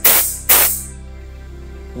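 Two short blasts of compressed air hissing out of the open end of a tyre inflator's open-end connector, off the valve, as the inflate lever is pressed; each starts sharply and fades within about half a second. The open end lets air flow out freely when not on a tyre valve. Background music continues underneath.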